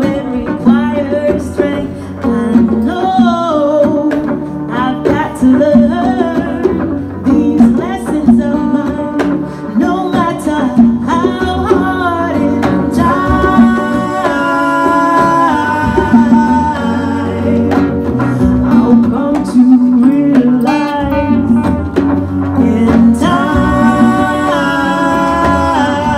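Live acoustic song: a woman sings lead, with held notes in the middle, over strummed acoustic guitar and djembe hand drums.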